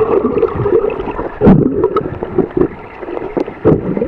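Water churning and bubbling around a submerged camera, heard muffled underwater, with scattered knocks and one loud thump about a second and a half in.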